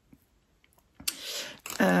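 A few faint clicks and a short rustle as a circular knitting needle and its flexible cable are handled, with one sharper click about a second in.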